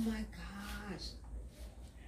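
A woman's voice exclaiming in amazement, "my God", followed by a drawn-out, level-pitched "oh" about half a second in, then a quieter stretch.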